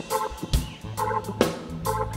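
Hard rock band playing live on stage: a steady drum beat under sustained bass notes and a repeating pitched chord figure.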